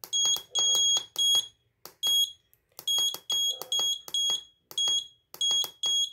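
Piezo buzzer of an Arduino bell-timer board giving about a dozen short, high-pitched beeps at uneven intervals, each starting and stopping with a click.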